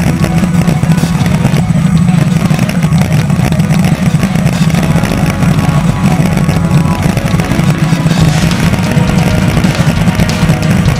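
Speedboat engine running steadily at speed, a loud unbroken drone, with music playing over it.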